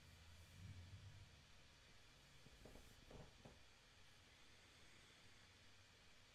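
Near silence: room tone, with a faint low hum fading out in the first second and a few faint, brief soft sounds around the middle.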